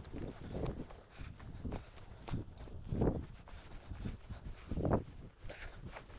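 Footsteps on a dry grassy, stony slope: a string of uneven thuds, about eight in six seconds, the heaviest about three seconds in and near the end.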